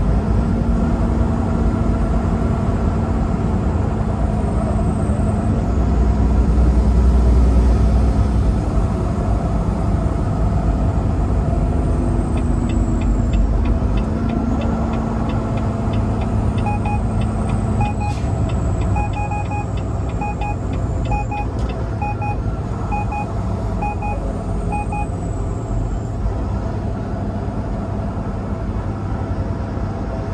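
Steady engine and road rumble inside a semi-truck cab at highway speed. Partway through comes a run of quick, even ticks, then a string of short paired electronic beeps repeating about once a second from the cab's dash.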